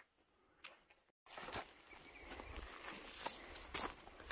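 Near silence, then from about a second in, footsteps through dry grass, with irregular rustling and light cracks.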